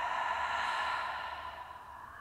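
A woman's long, breathy sigh out through the mouth, loudest in the first second and tailing off toward the end: the exhale after a deep breath in through the nose.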